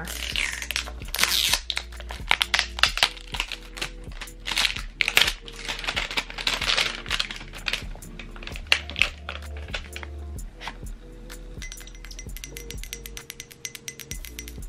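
A cardboard perfume box being torn and opened, with crinkling wrapping and sharp clicks and taps of handling, busiest in the first half. Then lighter clicks as the glass bottle comes out, all over background music.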